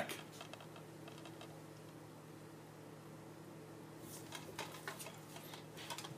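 Faint light clicks and taps of a plastic DVD case being handled and turned in the hands, over a low steady room hum; the clicks are sparse at first and come more often in the last two seconds.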